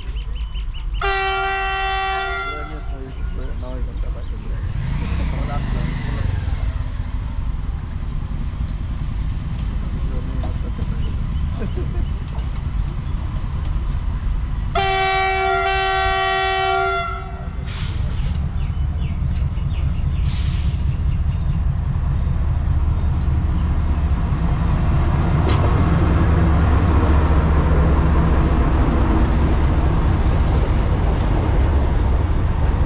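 Indian Railways WDG4G diesel locomotive sounding two long horn blasts about 13 seconds apart as it approaches a level crossing, then the low rumble of its engine and the freight train on the rails growing louder as it arrives at the crossing.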